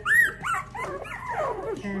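Young puppies yipping and whining: a sharp high yip about a quarter-second in is the loudest, followed by several overlapping, falling whines.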